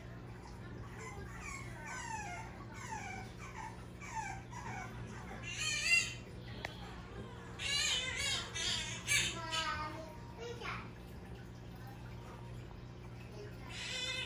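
A puppy whining: a run of short, high whimpers, each falling in pitch, about two a second, then louder and higher cries in the middle and again near the end.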